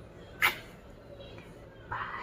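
A single short kiss smack, a blown kiss from the lips into the hands, about half a second in, over low room tone.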